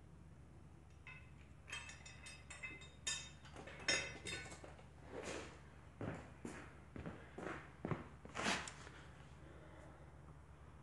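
Steel mower blades and a cordless impact driver being set down and handled on a concrete floor: a run of separate metallic clinks and clatters, some ringing briefly.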